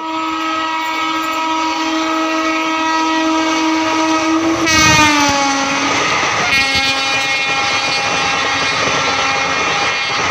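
Indian Railways electric locomotive sounding one long horn blast as it runs through a station at about 120 km/h. The horn's pitch drops sharply about five seconds in as the locomotive passes, and the rush of the coaches going by at speed follows.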